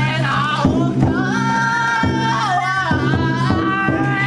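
A group of men chanting and singing in unison with long held notes, over a steady low tone and sharp beats about every half second.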